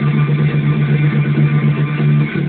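Electric bass guitar played fingerstyle, a fast run of repeated notes on one low pitch.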